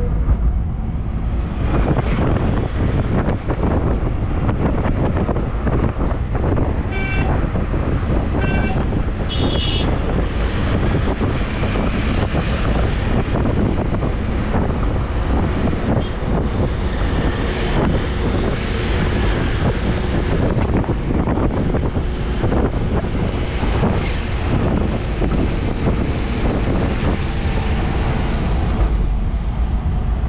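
Steady road and engine noise heard from inside a moving vehicle, with some wind on the microphone. Two short horn toots sound about a quarter of the way in, followed by a brief higher-pitched beep.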